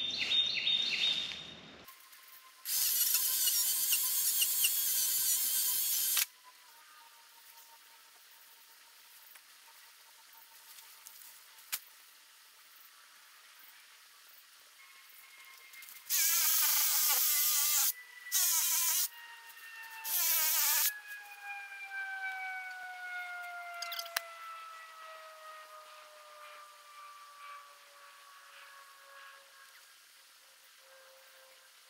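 Electric chainsaw cutting through branches in short trigger bursts: one of about three and a half seconds early on, then three quick bursts about two-thirds of the way through, with no idle between them. After the last burst a faint high whine slides slowly down in pitch.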